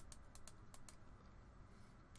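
Six faint, quick computer mouse clicks in the first second, each short and sharp.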